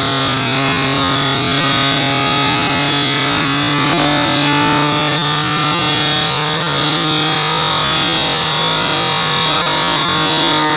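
String trimmer (weed eater) motor running steadily at speed, a loud, even buzz that does not rise or fall.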